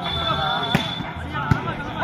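Spectators' voices and chatter around the court, with two sharp knocks of a volleyball about three quarters of a second apart, and a faint high steady tone during the first second.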